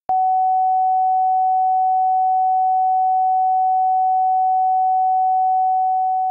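Television sign-off test tone played with the station's test pattern: a single steady pure tone that comes in with a click and holds one pitch, beginning to fade just before the end.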